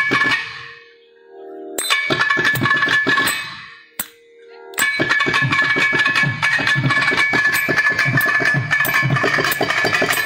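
Thavil drum played solo: fast, dense runs of sharp stick strokes. The playing breaks off twice for about a second, near the start and around four seconds in, with one lone stroke in the second pause, then runs on without a break.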